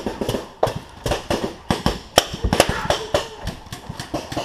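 Paintball gunfire: irregular sharp pops and knocks at about four a second, the loudest a little past two seconds in, from paintball markers firing and balls striking the wooden structure.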